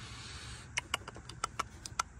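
Faint, irregular light clicks and taps, starting less than a second in, as a hand touches and handles parts in a car's engine bay.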